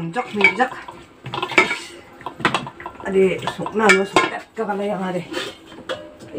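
Stainless steel pots, lids and bowls clattering and clinking as they are handled, with several sharp metal knocks.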